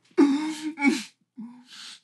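A man's wordless gasping sobs while eating: two drawn-out pitched cries in the first second, a shorter lower one after a pause, then a breathy gasp near the end.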